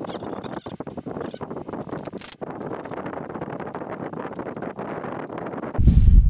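Hands handling a small plastic puck light housing: a run of small clicks and taps over a steady hiss.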